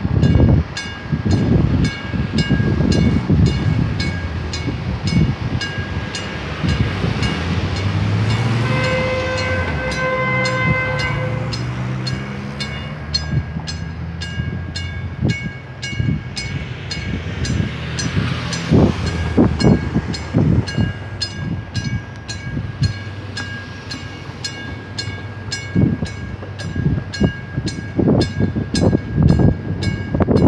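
Drawbridge warning bell ringing in steady repeated strikes while gusts of wind buffet the microphone. A horn sounds once for about three seconds, roughly a third of the way in.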